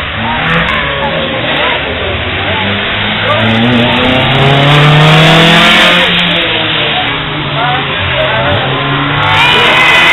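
Ford Escort Mk2 engine revving hard and dropping back again and again as the car slides sideways through the corners of a wet track in a drift. The pitch keeps rising and falling, and it is loudest about halfway through.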